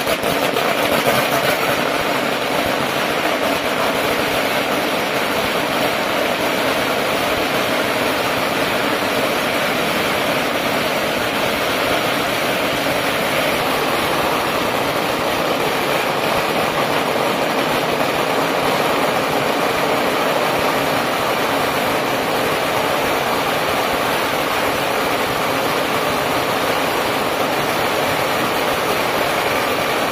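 Long strings of red firecrackers laid along the street going off as one loud, steady, unbroken crackle of dense rapid bangs.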